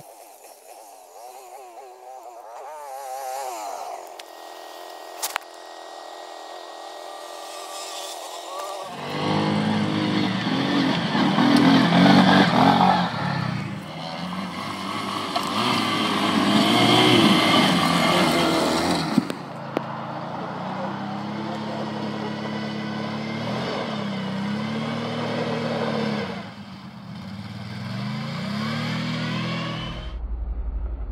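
Quad bike (ATV) engine revving hard and repeatedly, pitch rising and falling as the throttle is worked. It is fainter and farther off for the first several seconds, then loud from about nine seconds in.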